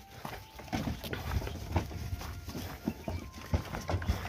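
Hooves of sheep and goats on dry, stony ground as the animals move out of their shed, heard as irregular light taps and knocks.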